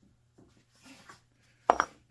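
Hands handling metal drill-press tooling at the chuck: faint rustles, then a sharp double clack near the end.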